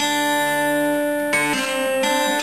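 Acoustic guitar set up as a lap slide guitar, played with fingerpicks and a steel bar: a chord rings steadily, then a new chord is plucked about one and a half seconds in.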